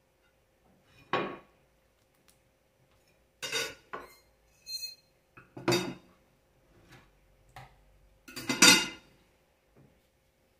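A ceramic plate knocking and scraping on a kitchen counter as a burger is handled on it: about eight short separate clatters with quiet between, one with a brief ring, the loudest near the end.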